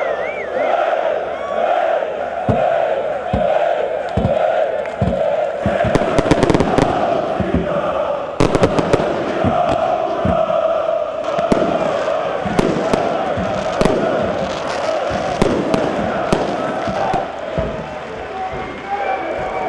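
Football supporters chanting in unison, with fireworks banging over the chant. The bangs start a couple of seconds in and come thickest about six to nine seconds in.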